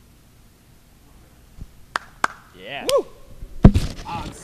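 Quiet at first, then a few sharp clicks and a short rising-and-falling voice sound, ending with a loud knock near the end.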